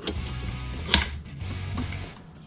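Light clicks of a folding-brace adapter and rifle parts being handled and fitted together, with one sharper click about a second in, over quiet background music.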